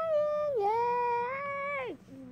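A child's high voice singing one long held note that dips in pitch about half a second in, then glides down and stops just before the end.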